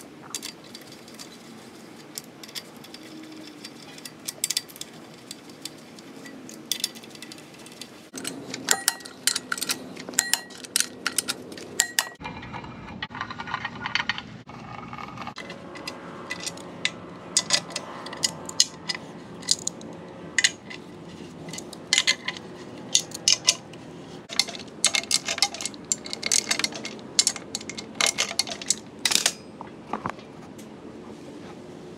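Steel hand tools clicking and clinking against bolts and metal as a flywheel and clutch pressure plate are bolted onto an engine block, with quick runs of small clicks in the second half.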